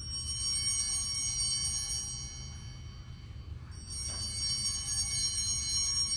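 Altar bells rung twice at the elevation during the consecration of the Mass. Each ring is a bright, high shimmer that fades over a few seconds, and the second comes nearly four seconds in, over a steady low hum.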